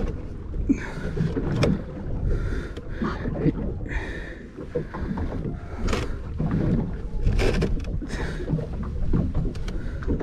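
Water slapping and lapping against the hull of a small fishing boat over a steady low rumble, with a few sharp knocks as a fish is handled against a metal ruler on the fiberglass deck.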